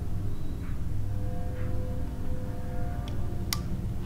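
Horror film soundtrack: a low steady drone with eerie held tones, and a single sharp click near the end.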